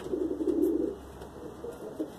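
Homing pigeons cooing: one longer, louder coo in the first second, then fainter coos.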